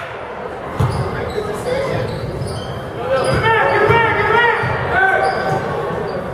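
A basketball bouncing on a hardwood gym floor, a series of irregular low thuds, with spectators' voices echoing in the gym.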